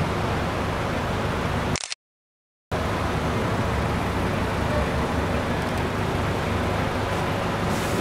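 Steady background hiss and low hum, broken about two seconds in by a gap of total silence lasting under a second.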